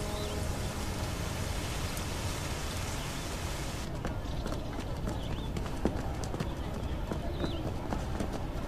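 Steady background hiss with occasional bird chirps. About halfway the hiss drops away, leaving a quieter outdoor ambience with bird chirps and scattered light knocks of footsteps as bearers walk past with a sedan chair.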